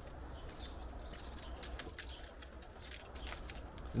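Faint scattered clicks and light scraping of copper wire being slid down inside a PVC pipe, over a steady low rumble.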